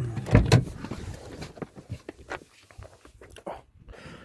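Handling noise as a smartphone is unplugged from its charging cables and taken out of a dashboard holder: a couple of loud knocks in the first second, then scattered small clicks and rustles.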